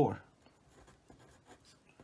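Pencil writing on paper: faint, irregular scratching strokes as figures are written out.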